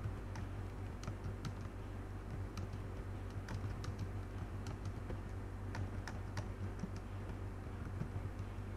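Typing on a computer keyboard: irregular keystroke clicks, several a second, over a steady low hum.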